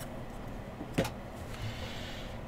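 Trading cards being handled by hand: a single sharp click about a second in, then a brief soft rustle of card stock, over a low steady room hum.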